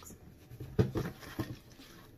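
A few soft taps and rustles from about half a second to a second and a half in, as of a cardboard subscription box and its packaging being handled while the last item is reached for.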